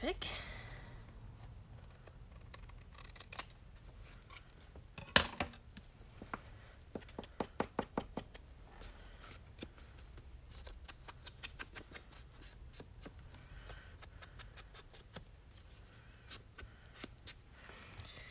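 Scissors snipping paper: a string of short, crisp cuts with a quick run of snips around seven to eight seconds in, and one sharper, louder click about five seconds in.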